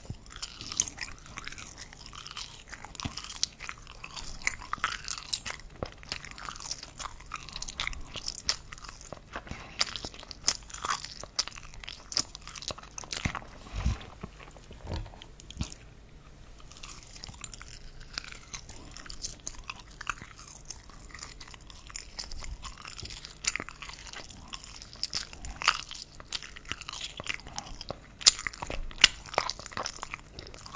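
Close-miked chewing of soft frankfurter (wurstel) pieces: irregular wet mouth clicks and smacks, with the sharpest ones near the end.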